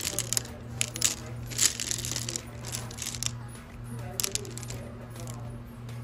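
Polished tumbled serpentine stones clicking and clinking against one another as a hand sifts through a basket of them. The clinks come in repeated bursts over the first four and a half seconds or so, then thin out.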